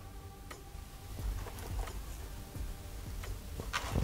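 Quiet handling sounds: faint scattered clicks and taps as a freshly cut ball python egg is handled and pressed down into coconut-chip substrate in a plastic tub, a little louder near the end. Under it is a faint steady hum.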